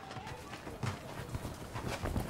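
Faint rustling of a jacket being pulled on, with a few soft, scattered knocks.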